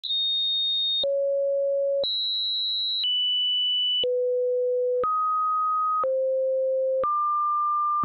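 Synthesized pure sine tones, eight in a row, each held for about a second before jumping to a new pitch, alternating between high beeps and low hums, with a small click at each change.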